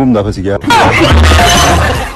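Men's voices, then about half a second in a sudden, loud crash-like noise with shouting voices and a deep low rumble beneath it. It holds for over a second and cuts off abruptly.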